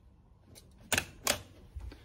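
Two sharp clicks about a third of a second apart, about a second in, as a power strip switch is pressed to power on two bench power supplies.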